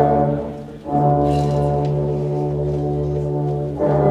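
A middle school band's brass holding long, low sustained chords. The sound dips briefly just before a second in, then one chord is held until a new chord enters near the end.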